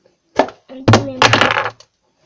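Hard plastic containers being handled: a sharp knock about half a second in, then about a second of clattering knocks.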